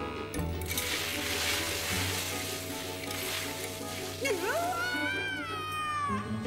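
A cartoon whoosh of characters sliding fast down elevator cables, over background music. Near the end comes a high gliding sound that dips, then rises and slowly falls.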